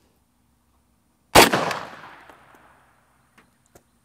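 A single shot from an M1 Carbine in .30 Carbine, firing an 85-grain Underwood Xtreme Cavitator round, about a second in, with an echo that trails off over a second or so. Two faint clicks follow near the end.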